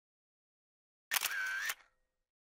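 Camera shutter sound effect, starting about a second in: a sharp click, a short whir with a steady tone, then a second click, all within about two-thirds of a second.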